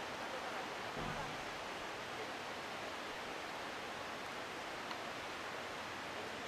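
Steady outdoor background hiss with no distinct event, and a faint low bump about a second in.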